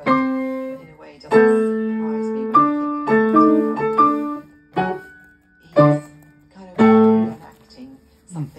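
Yamaha piano played: a series of chords struck one after another and left to ring and fade, with a quicker run of repeated chords in the middle and the last chord dying away near the end.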